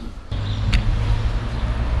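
Street traffic: a motor vehicle running close by, a steady low rumble that comes in abruptly about a third of a second in, with a short click just before the one-second mark.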